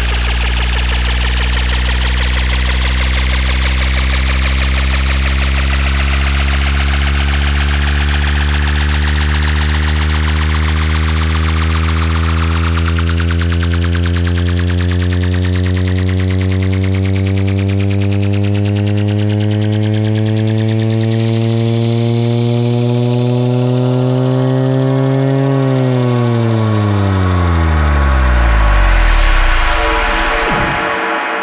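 Synthesizer drone of many stacked tones whose upper notes slowly rise in pitch, then about 26 seconds in the whole stack sweeps steeply downward and cuts off near the end.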